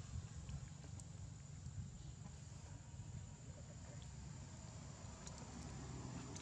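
Faint outdoor background: a steady low rumble with a thin, steady high-pitched whine, and a few small clicks about a second in and near the end.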